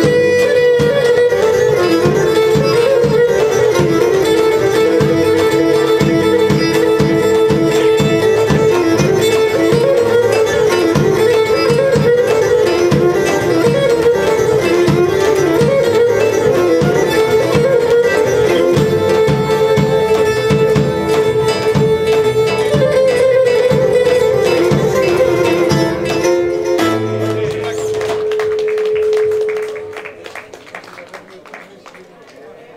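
Live Pontic folk music: a Pontic lyra plays a quick melody over guitar and steady beats of a daouli (large double-headed drum). Near the end the drum stops and the lyra holds one last note as the tune finishes.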